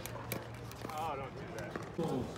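Pickleball rally: a few sharp pops of paddles striking the plastic ball, with a voice in the background.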